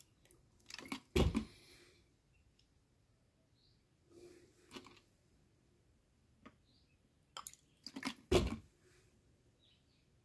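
Plastic handling sounds while distilled water is poured into a small sealed lead-acid battery cell through a plastic filler funnel: a few short crinkles and knocks from the plastic water bottle and funnel tube, the loudest about a second in and again around eight seconds in.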